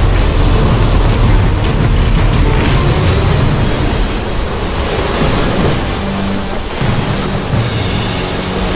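Sound-designed rushing wind with several sweeping whooshes as a whirlwind of leaves swirls, over low sustained background music.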